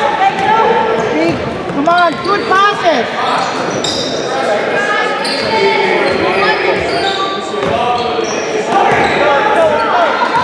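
A basketball being dribbled on a hardwood gym floor during a game, with voices calling out and the sound echoing around the large gym.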